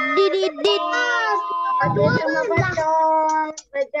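Children's high-pitched voices over a video call, singing in drawn-out, wavering notes that overlap. They break off sharply near the end.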